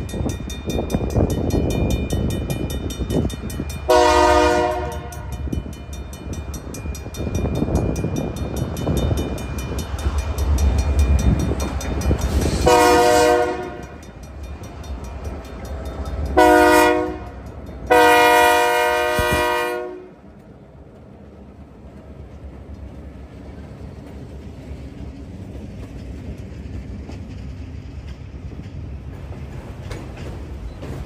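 Nathan K3LA air horn on a CN EMD GP38-2 locomotive sounding the grade-crossing signal, long, long, short, long, over the diesel engines' rumble as the two locomotives draw near and pass. After the last blast, about two-thirds of the way in, the locomotives fall away and autorack cars roll by with steady wheel-on-rail noise.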